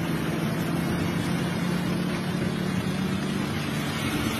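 Steady drone of a moving road vehicle: a low engine hum over constant road noise, unchanging throughout.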